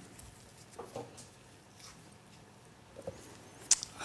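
Quiet room with a few faint clicks and taps of small dental instruments being handled and passed hand to hand, the sharpest click near the end.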